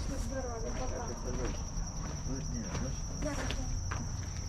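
Insects singing outdoors: one steady, unbroken high-pitched drone among trees and bamboo, with faint voices of people talking over it.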